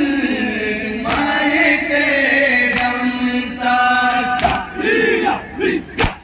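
Male voices chanting a nauha (Shia elegy) in long held, slowly falling lines, with the sharp slaps of chest-beating matam about every second and a half, three strikes in all. About two-thirds of the way through the held line stops and gives way to short, broken shouts.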